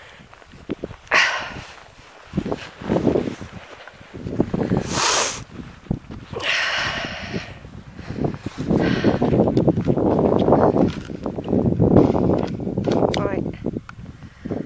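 Footsteps through boggy moorland grass, with wind buffeting the microphone in uneven gusts, strongest in the later part.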